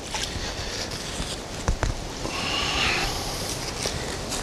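Neodymium fishing magnet on a rope being hauled through shallow stream water, with rustling and splashing; a single knock near the middle and a louder rush of noise a little past halfway.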